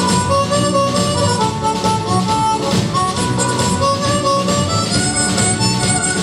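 Harmonica playing a lead melody of held, bending notes live, backed by a full band with a steady beat.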